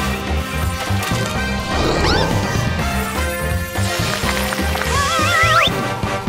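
Cartoon background music with a steady beat, overlaid with crashing sound effects and a few short sliding squeaks, the longest a wavering, rising squeal near the end.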